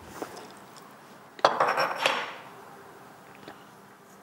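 A small hand-held sea-salt mill being handled and twisted: a small click at the start, then one short, loud rasping rattle of under a second about a second and a half in.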